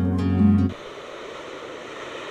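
Instrumental music that cuts off abruptly under a second in, followed by the quieter, steady sound of ocean waves breaking on a beach.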